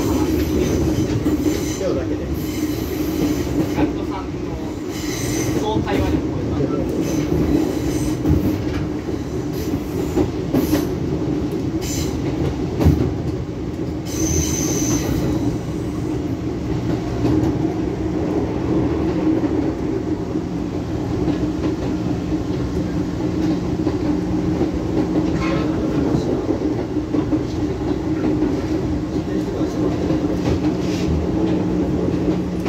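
Running noise of a Fujikyu Railway electric train heard from inside the car: a steady rumble of wheels on rail, with short high wheel squeals. The longest squeal lasts about a second and a half, near the middle.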